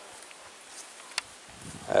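German Shepherd gnawing a raw, semi-frozen ostrich neck, with faint chewing and a single sharp crunch about a second in.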